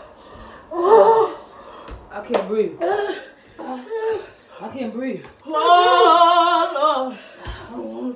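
Women's voices crying out and exclaiming in reaction to the burning heat of a super-spicy gummy candy, with a sharp slap about two seconds in and one long, wavering wail near the end.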